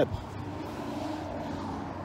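Steady distant engine hum with a faint low drone.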